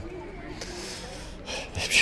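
A pause in a man's speech: low outdoor background noise with a soft breath-like rush in the middle, then his voice starting again near the end.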